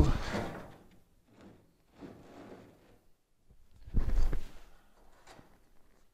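Faint handling noises and one short knock with a sliding scrape about four seconds in, from a paint stick and marker being worked along the gap of a car's sheet-metal trunk lid.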